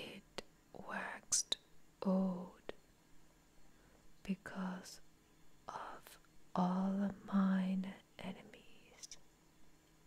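Whispered speech in short phrases with pauses between them, with small clicks in the gaps.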